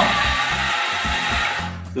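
Small geared DC drive motors of a tracked robot running with a steady whir, cutting off about one and a half seconds in as the stop command takes effect.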